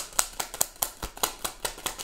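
Deck of tarot cards being shuffled by hand: a quick, even run of card slaps and clicks, about five a second.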